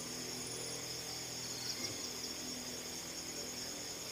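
Crickets chirping in a steady, high-pitched night chorus.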